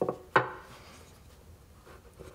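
Small blocks of scrap wood knocked together on a tabletop: two short wooden knocks about a third of a second apart, the second louder with a brief ring.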